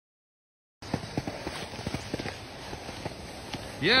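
Irregular dull knocks and clicks, a few a second, after a brief silence at the start; near the end a man's voice calls out a loud, drawn-out "yeah".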